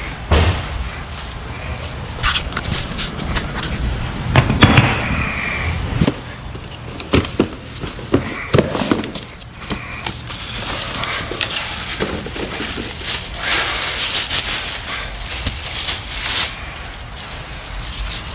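Several sharp knocks and clatters of parts being handled. Then, from about ten seconds in, cardboard and plastic wrap crackle and rustle as a new CV axle is unpacked from its box.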